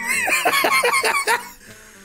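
A man laughing in a high, squealing pitch that wavers up and down, dying away about a second and a half in.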